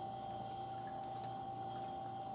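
Quiet room tone: a steady faint hum with a faint tick near the end.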